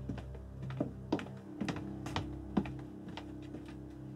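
Footsteps on a hard floor: sharp, separate clicks about two a second, over a low, sustained drone of film score.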